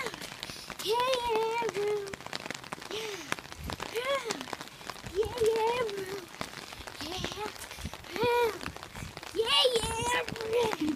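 Rain pattering on a hard surface while a young child's high voice sings or calls out short wordless notes, each rising and falling, about once a second.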